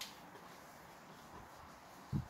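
Near silence: quiet room tone, opening with a single brief click.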